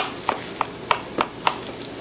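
Chef's knife chopping bell pepper on a plastic cutting board: six evenly spaced sharp strikes, about three a second.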